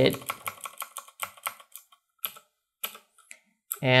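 Computer keyboard keystrokes: a fast run of key presses for about two seconds, then a few single presses, as a line of text is deleted in a terminal editor.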